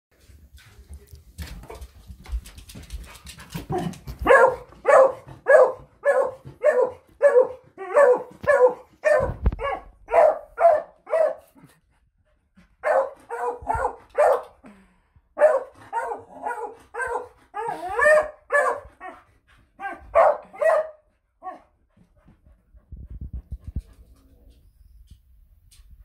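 Beagle barking over and over, about two barks a second, in two long runs with a short break in the middle.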